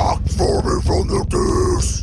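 Guttural, grunted death metal vocals heard almost alone during a break in the guitars and drums, in several short phrases separated by brief gaps.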